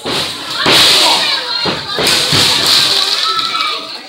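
Small crowd shouting and cheering, loudest in the middle, with several thuds of wrestlers hitting the ring canvas.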